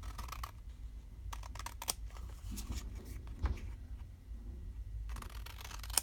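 Scissors snipping through paper: short cuts in several irregular bursts with pauses between.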